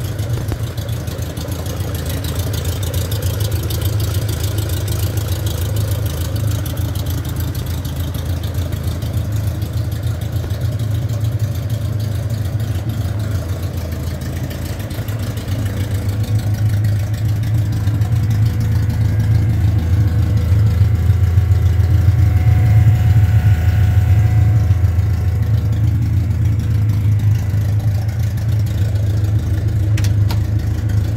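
Datsun 1200 race car's four-cylinder engine idling steadily with a low, even hum, growing somewhat louder past the middle.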